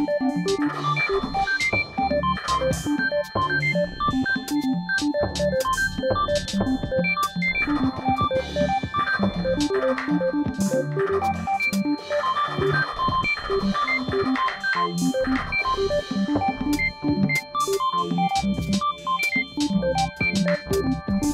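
Programmed electronic music: quick, short synthesizer notes hopping in pitch over a low bass line, with sharp percussive clicks throughout.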